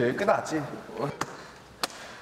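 Faint voices that trail off over the first second, then two sharp taps, about a second apart.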